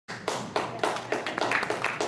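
Hands clapping in a steady rhythm, about four claps a second.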